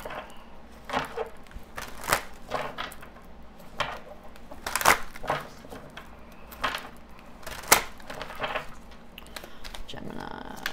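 A deck of tarot cards being shuffled by hand: a string of irregular sharp clicks and slaps as the cards are worked, about eight in all, the loudest near the end.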